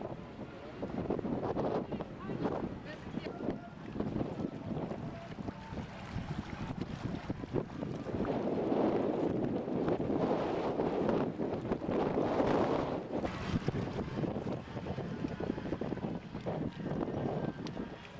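Wind buffeting the camcorder microphone in gusts, strongest about eight to thirteen seconds in.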